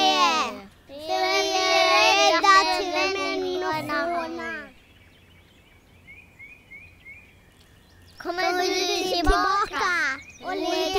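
Young children's voices singing a line with long held notes. Then a quiet gap holding a quick run of faint high chirps, and a child's voice comes in again near the end.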